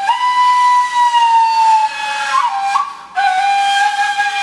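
Golden plastic Arabic ney played in a slow Huseyni taksim: one long breathy held note that sinks gradually in pitch, a quick ornament, a short breath about three seconds in, then a lower held note.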